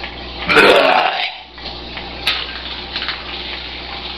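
A man belches once, a single drawn-out burp lasting under a second, about half a second in.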